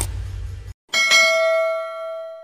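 A low whooshing transition effect fades out. Just under a second in, a single bright bell ding rings and slowly dies away: a notification-bell sound effect in a subscribe animation.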